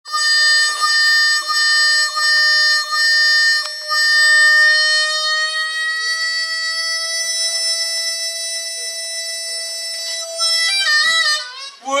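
Blues harmonica played solo: a high note repeated in short pulses, then one long held note that bends slowly up in pitch and breaks into a fast warble near the end.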